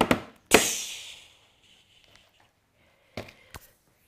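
Hands drumming a quick drum roll on a wooden tabletop, ending just after the start with one loud sharp hit that rings and fades over about a second. Two short soft hits, like a clap, follow near the end.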